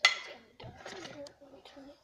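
A bowl with a spoon in it clinks sharply once, ringing briefly; a child's voice then murmurs wordlessly.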